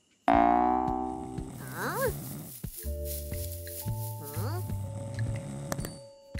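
A large cartoon dinosaur's loud drawn-out vocal groan, falling in pitch, comes after a moment of silence. It is followed by two short swooping vocal sounds over a soft cartoon music cue of sustained notes.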